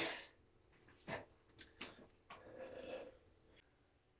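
A man's faint breathing just after a heavy lift: a short sharp exhale about a second in, a few small clicks, then a longer soft breath out.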